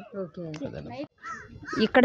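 Low voices talking in the background, with a bird calling about a second and a half in.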